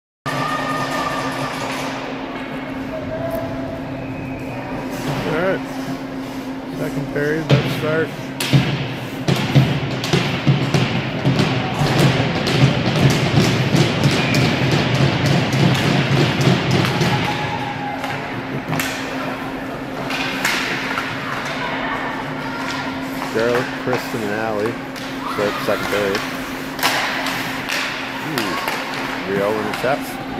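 Ice hockey rink sound: repeated sharp thuds and knocks of pucks and sticks against the boards and ice over a steady hum, with voices echoing in the arena.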